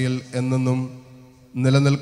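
A priest's voice intoning a liturgical prayer in Malayalam, held on a level chanting pitch, with a short pause about a second in before he goes on.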